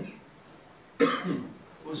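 A man clears his throat with one sudden, loud cough into a close microphone about a second in, after a short pause.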